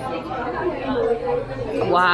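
Several people talking over one another in a busy restaurant dining room: a steady hubbub of diners' chatter with no single clear voice.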